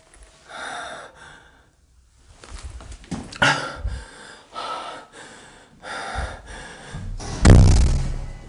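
Irregular footsteps, rustling and breaths from a person moving on a staircase, in about six separate bursts. A louder, deeper bump near the end comes as the camera is swung.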